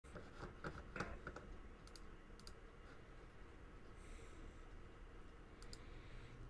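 Faint scattered clicks over low room noise. They come thickest in the first second and a half, with a few more later.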